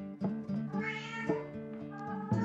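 A domestic cat meows once, about a second in, the pitch rising and then falling, over plucked guitar music.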